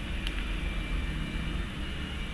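Steady low rumble of background noise, with one faint short tick about a quarter of a second in.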